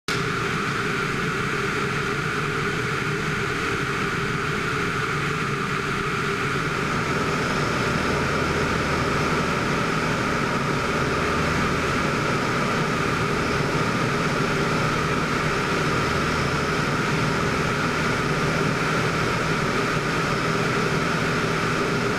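Van's RV-6's single piston engine and propeller in cruise flight, a steady even drone heard from inside the cockpit.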